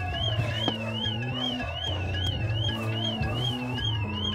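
A high, rapidly warbling siren tone, wobbling about three times a second throughout, over a low, sustained music score, with a lower tone that slowly falls and then rises again.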